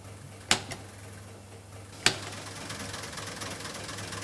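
Relays of the Zuse Z3 relay computer replica switching as the entered number 12 is converted to binary and stored. There are two sharp clicks about a second and a half apart, then a fast, dense relay chatter to the end.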